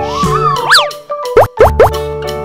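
Children's background music with a wavering melody over steady notes. About halfway through, a quick glide rises and falls; then three short rising boing-like glides follow in quick succession.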